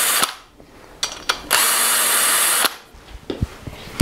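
Power drill with a socket spinning main bearing cap bolts out of an engine block. One run stops just after the start. A couple of clicks follow, then a second run of just over a second.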